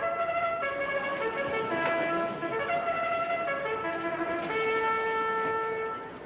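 Trumpet playing a short melody of separate held notes, the last one held longest.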